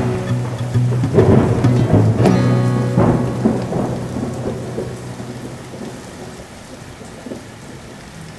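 Thunderstorm: rain falling with rolling thunder, several rumbles in the first three seconds, then thunder and rain fade away together. A held low musical note dies out about two and a half seconds in.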